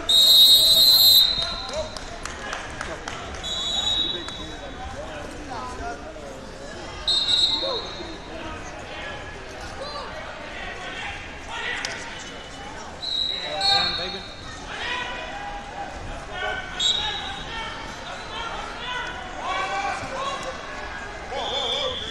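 A referee's whistle blows once, loud and for about a second, as the match clock hits zero, ending the match. Several shorter, fainter whistles from other mats follow at intervals over a steady hubbub of many voices.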